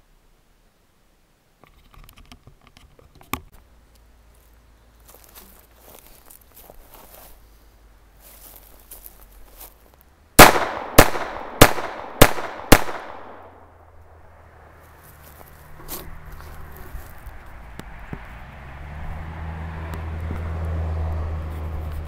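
Phoenix Arms HP22A .22 LR pocket pistol fired five times in quick succession, about half a second apart, each shot trailing off briefly.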